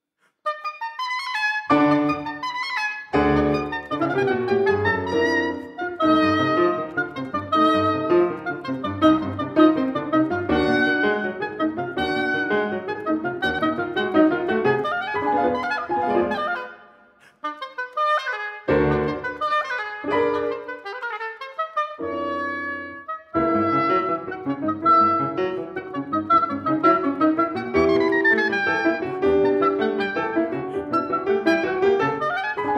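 Oboe and piano duo playing the opening of a scherzando movement, coming in about half a second in, with a brief pause a little past the middle.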